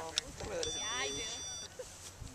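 A model rocket's electronic altimeter gives one steady high beep lasting about a second, starting about half a second in, over background voices. This long tone opens its readout of the flight's peak altitude, which it then beeps out digit by digit.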